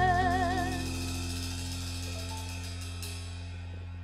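A live band's final chord ringing out at the end of a song. The singer's last held note, with a wide vibrato, ends within the first second. Sustained keyboard and bass notes and a high shimmer of cymbals keep sounding and die away over the next few seconds.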